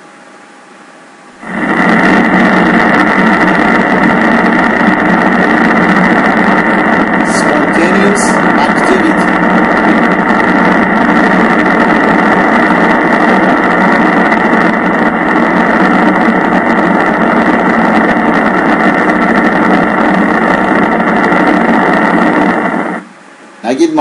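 Needle-electrode EMG signal played through the EMG machine's loudspeaker: a loud, dense, continuous crackle of many motor-unit discharges, like the full interference pattern of a maximal contraction but arising as spontaneous activity. It starts about a second and a half in and cuts off abruptly about a second before the end.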